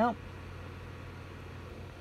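A man's single word at the start, then a steady low hum under faint background hiss.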